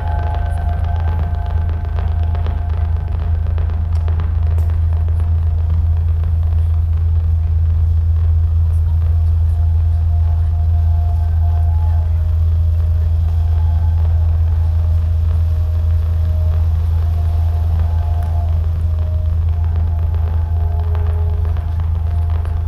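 Electroacoustic piece played back over the hall's speakers: a loud steady low rumble, with faint held tones in the middle range drifting in and out above it.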